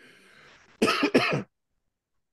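A man gives a faint breathy laugh, then coughs twice in quick succession about a second in.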